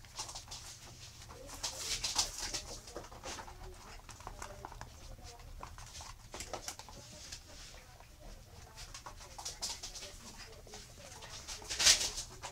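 Eight-week-old miniature schnauzer puppies playing and tussling, with small grunts and growls and the scrabbling of claws on a hard floor. There is a sharper, louder noise just before the end.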